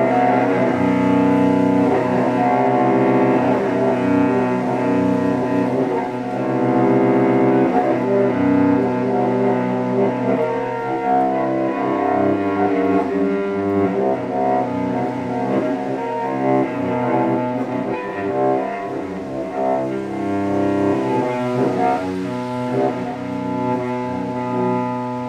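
Solo cello bowed in long sustained notes, with several pitches sounding together as a steady, dense drone.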